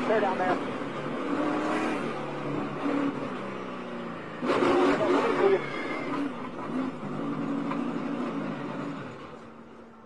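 In-car audio from a NASCAR stock car's V8 as it slides through the infield grass after a wreck: low engine note under a steady rush of noise, with a louder burst about four and a half seconds in. The sound dies away near the end.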